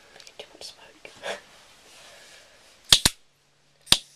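Piezo igniter of a butane jet lighter clicking: a quick pair of sharp clicks about three seconds in and another just before the end, with no flame catching yet.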